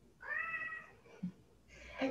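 Domestic cat meowing once, a short call lasting under a second.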